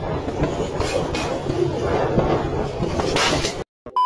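Rumbling wind and road noise from a camera on a moving vehicle, with a few louder rushes of air, cutting off abruptly near the end.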